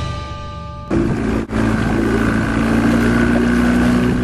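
Music fades out, then about a second in a steady engine hum cuts in and runs on with a low drone, broken once by a short dropout.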